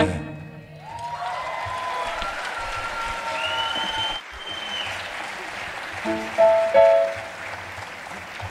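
A theatre audience applauding and cheering as a live band's song ends, with whistles sliding in pitch. There are a couple of short, loud shouts about six and a half seconds in.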